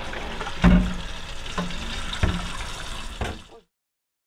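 Kitchen tap running into a stainless-steel sink as dishes are washed, with a few knocks of a dish against the sink, the loudest about half a second in. The sound cuts off suddenly shortly before the end.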